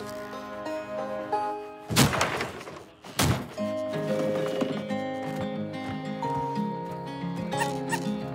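Orchestral-style film music that breaks off about two seconds in for a noisy crash lasting about a second, then one sharp knock, after which the music starts again. The crash and knock go with a small wooden doghouse being knocked over.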